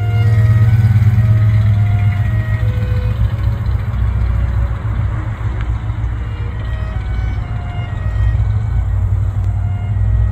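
1968 Cadillac DeVille's 472 V8 running with a steady, deep exhaust note as the car drives slowly by at low speed.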